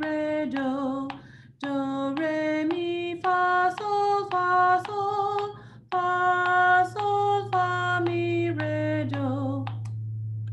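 A woman singing a simple stepwise melody on solfège syllables (do, re, mi, fa, sol), one steady note after another. She pauses briefly twice, at the rests.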